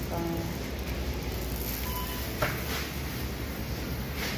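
Steady supermarket background noise with a low hum. A single short click comes about two and a half seconds in.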